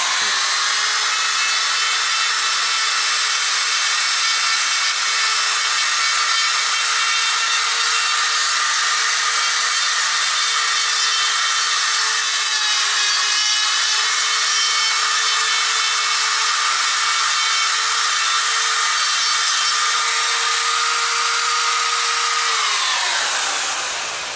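Electric die grinder running at a steady high whine while its bit carves into a ficus trunk, grinding away the wood; near the end it is switched off and its pitch falls as it spins down.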